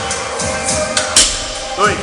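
A loaded barbell's bumper plates strike the rubber gym floor once, sharply, about a second in, as a touch-and-go deadlift rep reaches the bottom. Background music plays throughout.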